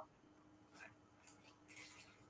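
Near silence: room tone with a faint low hum and a few faint, brief soft rustles.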